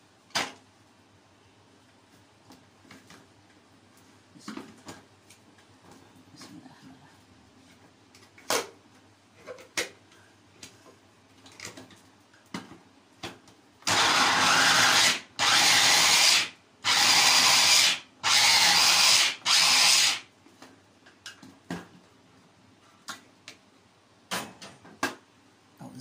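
Electric mini food chopper (kebbeh) mincing garlic cloves, run in four pulses of about a second each, the last a little longer, about halfway through. Before and after the pulses there are scattered clicks and knocks of the bowl and lid being handled.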